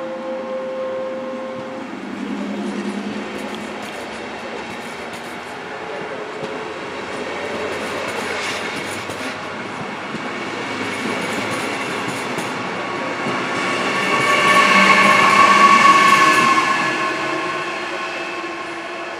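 Regional train of n-Wagen coaches pulling out and rolling past, running noise of the wheels growing as it picks up speed. Near the end it swells to its loudest with a steady electric whine from the class 147 electric locomotive's drive.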